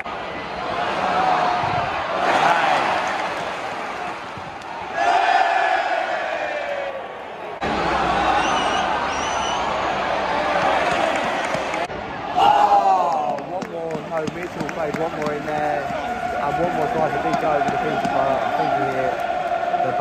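Football crowd in a stadium stand: many fans shouting and chanting together, with held sung notes near the end. The sound changes abruptly twice, at about seven and twelve seconds in.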